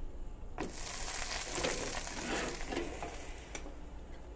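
Butter sizzling as a buttered sandwich goes into a preheated Red Copper Flipwich stovetop sandwich pan. The sizzle starts about half a second in and thins out near the end, with a single light click shortly before the end.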